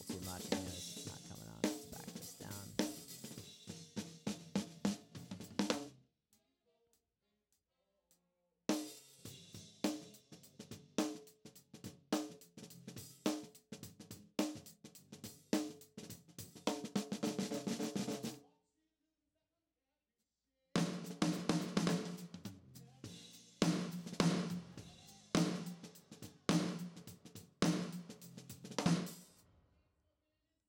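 Live-recorded snare drum track played back through a noise gate: quick runs of snare strokes with a ringing body. Playback stops dead twice and starts again.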